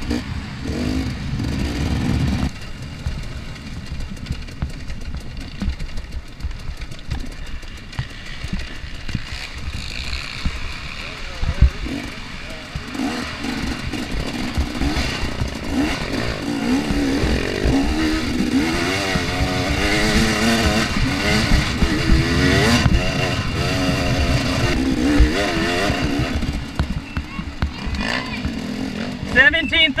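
Single-cylinder two-stroke engine of a 2014 KTM 250 XC-W dirt bike, ridden hard over a trail: the pitch rises and falls over and over as the throttle is opened and shut.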